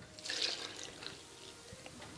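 Mineral water poured from a plastic measuring jug into a bowl of cornmeal and flour: a splashing pour for about half a second, then trailing off quietly.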